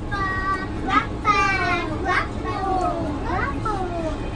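Young children's high-pitched, excited voices calling out several times, with gliding pitch, over the steady low rumble of a city bus.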